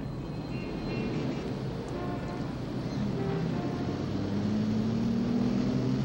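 Car engine running with steady road rumble as the car drives along, its low note rising gently in the last two seconds.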